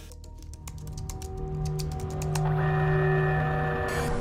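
Rapid computer-keyboard typing, many clicks a second that thin out after about two and a half seconds, over held music tones that swell louder.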